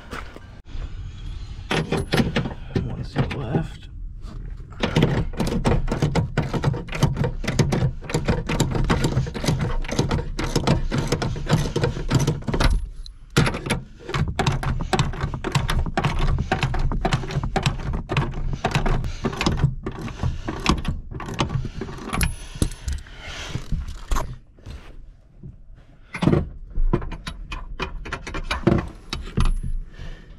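Irregular rustling, knocking and metallic jangling from work on a pickup truck's rear seat inside the cab, with the camera brushing against the seat fabric. The noise comes in stretches broken by short pauses.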